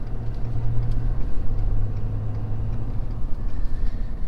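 Pickup truck cab interior while driving and towing a loaded trailer: a steady low engine and road hum.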